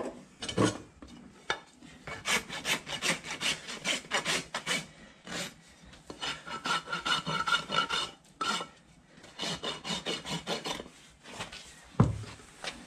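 Hoof rasp filing a horse's hoof in quick back-and-forth strokes, about three or four a second, in several runs with short pauses between. In the middle run the strokes carry a faint ringing squeal.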